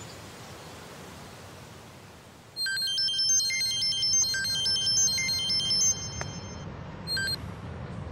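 Mobile phone ringtone: a short electronic melody of high beeping notes that starts a few seconds in and plays for about three seconds, with one brief note again near the end, over a low steady hum.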